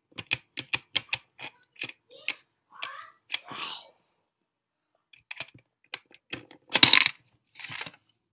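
Coins being fed into the slot of a plastic soccer-ball coin bank with an automatic counting display: a quick run of small clicks and clinks, a pause of over a second near the middle, then more clicks and a louder clatter near the end as a coin drops inside.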